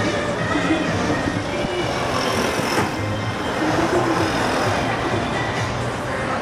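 Music playing from a shop's outdoor loudspeaker, mixed with steady street traffic noise.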